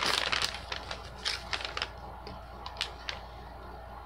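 Paper packing slip rustling and crinkling as it is pulled out and unfolded, loudest in the first second, then a few light crackles and clicks.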